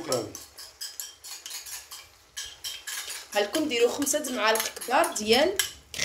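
Metal spoon scraping a soft white filling out of a plastic packet over a frying pan, with quick clicks and taps of the spoon in the first couple of seconds. From about three seconds in comes a busier run of scraping with high, gliding squeaks as the spoon drags along the packet.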